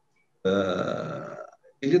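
A man's drawn-out hesitation sound, a held "ehh" of steady pitch lasting about a second, starting about half a second in and trailing off. He begins speaking again just before the end.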